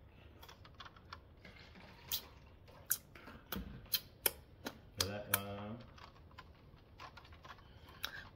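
A handful of sharp, separate clicks and taps, about seven over the middle few seconds, with a short hummed voice sound about five seconds in.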